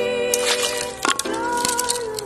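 Background music with several sharp cracks cutting through it. The loudest comes about a second in: an orange balloon bursting as a blade pierces it, with smaller cracks just before.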